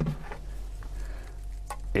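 Handling noise as a coiled USB extension cable is picked up and handled, soft rustling with a few faint clicks, over a steady low hum.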